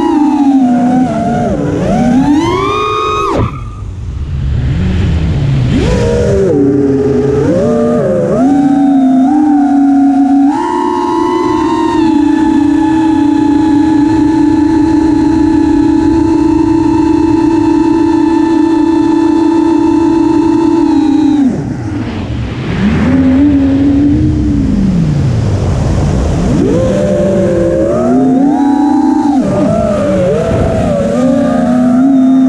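Brushless motors and propellers of an FPV quadcopter (DYS Samguk Wei 2300kV motors), heard from on board: a whine whose pitch rises and falls with throttle. It drops away briefly twice, holds one steady pitch for about ten seconds in the middle, and climbs again near the end.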